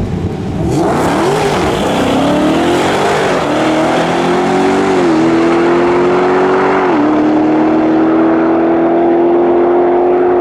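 Dodge Demon 170's supercharged 6.2-litre V8 launching at full throttle and accelerating hard down the drag strip. Its note climbs and drops back at each upshift, three shifts in all, as the car pulls away.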